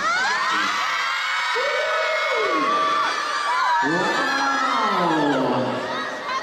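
A concert audience screaming and cheering in many high-pitched voices. Over it, a man's voice holds a long note that slides down in the second half, the last word of the song.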